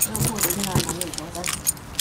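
Small metal pieces jingling and clicking in quick, irregular rattles.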